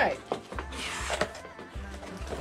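Flaps of a cardboard shipping box being pulled open by hand: a short rustling scrape of cardboard about a second in, with a couple of light knocks.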